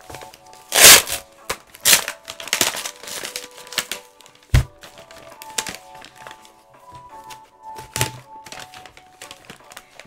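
Individually wrapped packaging around a graded comic slab being crinkled and torn open by hand in quick rustling bursts, with one heavier thunk about four and a half seconds in. Quiet background music with held notes plays underneath.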